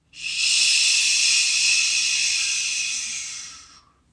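A steady hiss, mostly high-pitched, that fades in just after the start and fades out just before the end.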